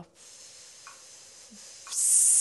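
A woman blowing a slow, steady breath out through her lips, a soft airy rush: the blowing stage of a breath-work engaged exhale, meant to drain the air from the lungs.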